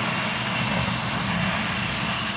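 Tracked excavator's diesel engine running steadily, with a thin high whine held above it.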